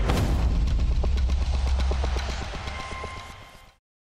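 A sharp crack of a cricket bat hitting the ball, layered with a deep trailer-style boom that rumbles for a couple of seconds and fades out. Faint quick ticking runs over the fade, and the sound cuts to silence just before the end.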